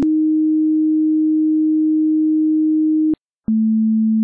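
A steady electronic sine tone is held for about three seconds and cuts off with a click. After a brief silence, a second, lower steady tone starts with a click.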